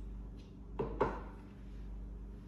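A mug knocking down onto a hard surface: two quick knocks close together about a second in, over a steady low electrical hum.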